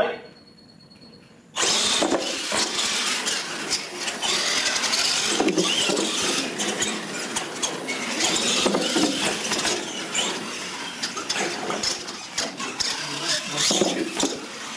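Electric R/C monster trucks launching off the line about a second and a half in and racing, with loud, steady motor and drivetrain whine.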